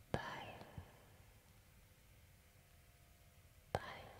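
Two sharp clicks about three and a half seconds apart, the first just after the start and the second near the end, each followed by a short fading tail.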